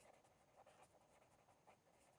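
Near silence, with a few faint scratches of a felt-tip marker writing on paper.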